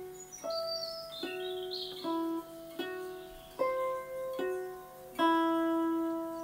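Hollow-body guitar picking a slow single-note riff, eight notes about one every 0.8 s, each left to ring: 11th fret on the G string alternating with the 12th fret on the high E, the open E, the 13th fret on the B, and the open E again.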